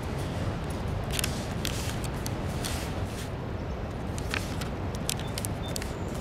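A sheet of thin origami paper (kami) being folded and creased by hand: a scatter of short, crisp paper crinkles and rustles over a steady low rumble.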